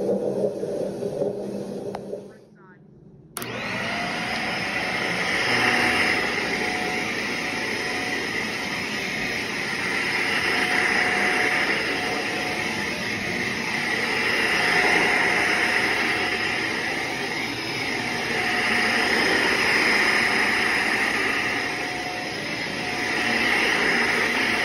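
Shark upright vacuum cleaner running as it is pushed back and forth over carpet, a steady motor noise with a thin whine on top, swelling and easing every four or five seconds. The sound briefly drops out, then comes back in abruptly about three seconds in.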